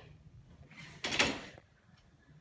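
Swivel office chair set down on a hard tile floor, one short clatter of its base and casters about a second in.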